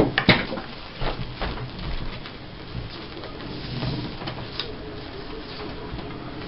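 Paper and craft supplies being handled on a tabletop: scattered light taps and clicks with soft rustling, the sharpest near the start.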